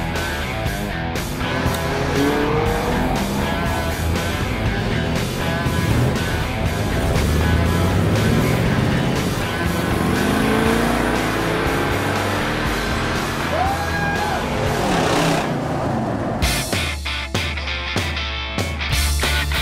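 Rock music with car engines revving and driving past over it, the revs rising several times.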